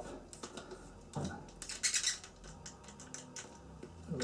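Small plastic clicks and crackles from fingers twisting and picking at the screw cap and the stiff plastic fitting on top of a small hot sauce bottle, with a denser run of clicks about halfway through.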